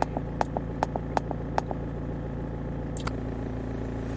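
Bosch common-rail diesel engine idling steadily. A quick run of short clicks sounds over it in the first second and a half, and a single click comes about three seconds in.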